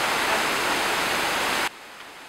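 Steady, loud rushing noise with no clear pitch, which cuts off abruptly near the end to a much quieter background.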